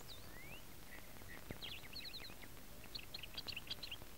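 Faint birdsong: quick, high chirps in a burst around the middle and another run near the end, over a quiet background hiss.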